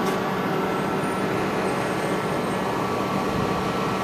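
Steady noise of a building's dryer exhaust fan: an even rush of air with a low hum under it.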